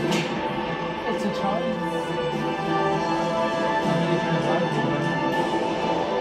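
Music with long held notes under a title sequence.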